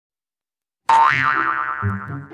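Silent for about the first second, then a cartoon boing sound effect: a springy tone that bends up, then slides down and fades. Low music notes come in near the end.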